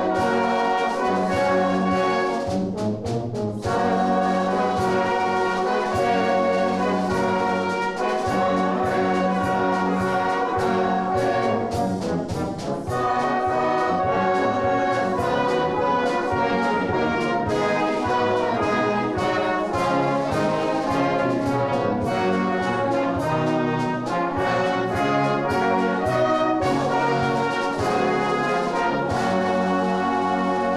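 Salvation Army brass band playing a full-harmony piece, with euphoniums and trombones among the brass. The music runs steadily, with brief breaks between phrases about three seconds and about twelve seconds in.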